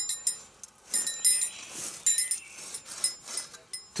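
Steel folding-saw blades clinking together and ringing, a string of short, bright metallic clinks as two saws are handled side by side.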